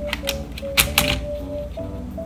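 Sharp plastic clicks and snaps from mechanical keyboard parts being handled and fitted, coming irregularly, with the two loudest near the middle. Light background music with a simple melody plays under them.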